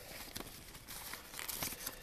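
Faint crinkling and rustling of paper and plastic packaging being handled, with scattered small crackles.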